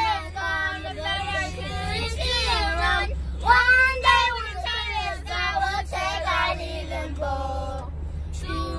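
Several young girls singing together, their pitches sliding up and down, over the steady low rumble of a moving van.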